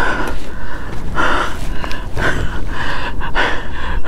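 A man breathing hard in heavy, gasping breaths, about one a second, out of breath and trembling with excitement after landing a fish. A steady low rumble runs underneath.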